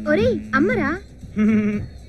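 A woman's voice in two short wordless phrases with swooping, wavering pitch, over a held low musical note that stops about a second in.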